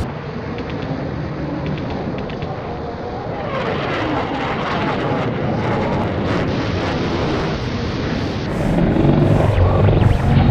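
A dense, steady rumble like aircraft engine noise, swelling about three and a half seconds in and growing louder near the end.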